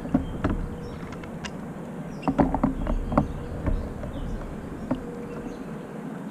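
Scattered knocks, clicks and rustling from a fish and gear being handled on a plastic kayak deck, bunched together from about two to four seconds in.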